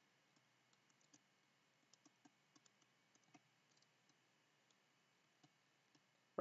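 Near silence, with faint, irregular clicks of a stylus tapping a pen tablet as words are handwritten.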